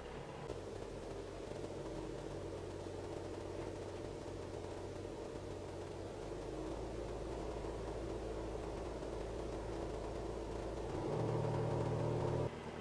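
Mitsubishi Triton 4D56 four-cylinder common-rail turbo-diesel idling while the ECU runs a small injection quantity relearn. The engine note shifts as the ECU varies rail pressure and injection timing cylinder by cylinder: the note changes about halfway through and gets louder near the end. It sounds weird, as if something is wrong, but this is normal for the learning process.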